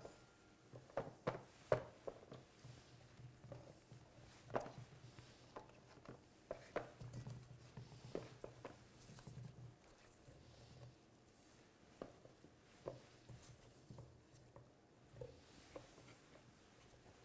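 Faint, scattered light taps and clicks of zucchini and yellow squash slices being set down by gloved hands on a metal sheet pan, over a faint low hum.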